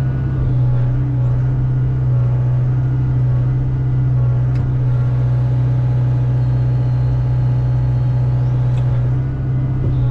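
Hyundai excavator's diesel engine running steadily under hydraulic load as the grapple saw handles a stump, heard from the cab as a loud, even low hum. Two short, sharp knocks come about halfway through and near the end.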